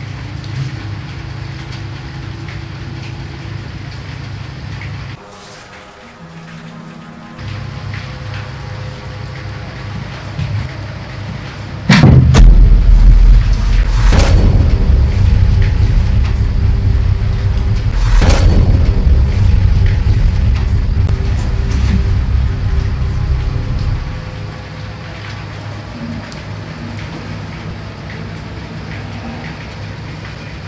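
Dark horror-style music: a low droning hum, then a sudden loud boom about twelve seconds in that opens into a heavy deep rumble with two further sharp hits, easing back to the low drone near the end.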